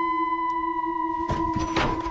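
A steady, eerie ringing tone holds throughout, and about a second and a half in a door slams shut with a clatter: an object knocked off the wall by the slam.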